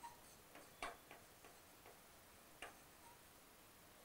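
Faint, light taps of a pen tip writing on an interactive display screen: a handful of short clicks spaced unevenly, the clearest about a second in and again past two and a half seconds, over near silence.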